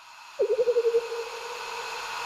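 Intro sound design: a hiss that swells steadily louder, with a brief wavering tone that pulses rapidly for about half a second near the start.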